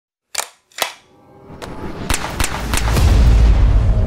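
Gunshot sound effects in a logo sting. There are two sharp shots about half a second apart, then five more in quicker succession over a deep bass swell that builds in loudness.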